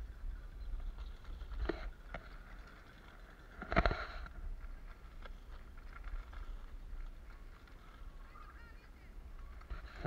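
Wind rumbling on the microphone of a camera mounted on a mountain bike ridden fast over a sandy race course, with small rattling clicks from the bike. About four seconds in comes a short, loud honk-like sound, with a smaller one just before two seconds.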